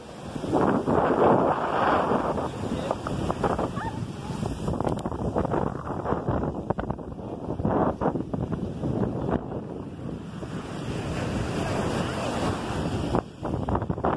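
Ocean surf breaking and washing up the sand, rising and falling in surges, with wind buffeting the microphone.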